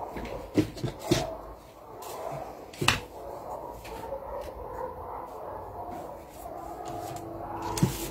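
A wooden curved pattern-drafting ruler being handled and laid on paper on a table: a few light knocks in the first three seconds, the last and loudest about three seconds in, then quiet handling.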